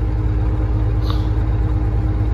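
Caterpillar 3406E inline-six diesel of a Freightliner FLD120 running as the truck rolls slowly, heard from inside the cab as a steady low rumble.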